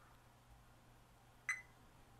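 Near silence, then about one and a half seconds in a single short, high beep from a Fluke 87 V multimeter in diode-test mode as its probes touch a MOSFET's leads during a check for shorts.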